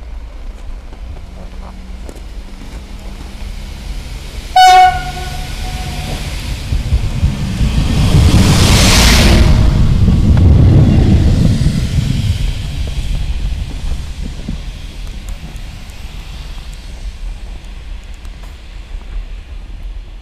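PESA SA135 diesel railbus sounding one short, loud horn blast, then passing close by, its engine and wheels swelling to a peak and fading as it moves off.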